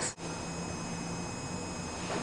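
Steady room tone between words: an even hiss with a thin, steady high-pitched whine, starting after a momentary dropout.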